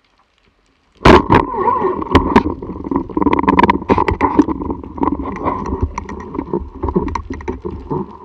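Speargun fired underwater about a second in: a sudden loud crack, followed by continuous clattering and knocking as the spear shaft, tip and line are handled against the gun-mounted camera housing.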